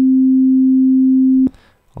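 Digital sine-wave test tone set at 0 dB, clean and not yet clipping: a single steady pure tone that stops abruptly with a click about one and a half seconds in.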